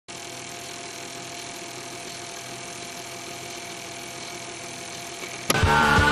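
Steady hiss with a low mains hum and a faint steady tone. About five and a half seconds in, loud punk rock music cuts in suddenly.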